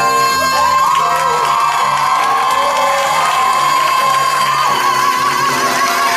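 A woman belting one long high held note over sustained accompaniment chords, with the audience cheering and whooping under it.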